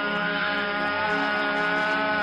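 A man singing a praise song, holding one long note that wavers slightly, with music behind it.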